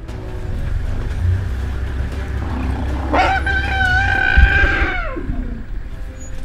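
An elephant trumpeting: one long, high, steady call starting about three seconds in and sliding down in pitch as it ends about two seconds later, over a deep low rumble.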